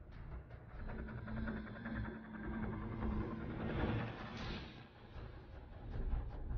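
TV game-show suspense sound effect after the stage button is pressed: a low rumbling pulse with a held hum, swelling into a rushing whoosh about four seconds in.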